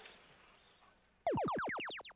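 FRC Power Up arena sound effect for a power-up being played, here Blue Alliance's Levitate: a quick run of about ten overlapping falling electronic tones, starting a little past a second in.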